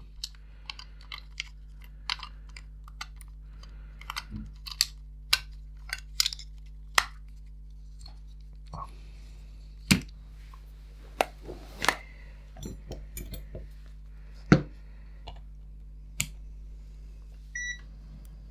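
Scattered clicks and light knocks of small plastic toy parts and a battery being handled and set down on a silicone work mat. Near the end there is one short high beep from a digital multimeter being switched on.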